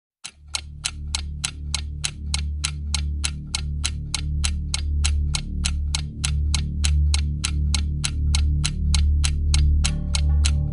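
Countdown-intro sound effect: a clock ticking steadily at about three ticks a second over a deep, pulsing bass drone that starts just after the beginning and swells louder over the first few seconds.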